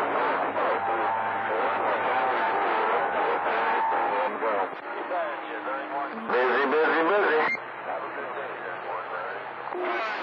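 CB radio receiving long-distance skip on channel 28: distant stations' voices come through garbled and overlapping, narrow and fading, with steady whistling tones under them for the first few seconds. A stronger voice breaks through about six seconds in, then the signal drops back.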